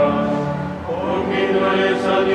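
A choir singing in held, sustained notes, moving to a new chord about a second in.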